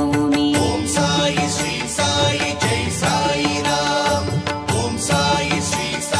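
Indian devotional music, an instrumental passage with held melodic tones over a steady percussion beat.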